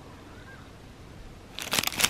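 Low room tone, then about one and a half seconds in a burst of crinkling from a clear plastic bag of earrings being handled.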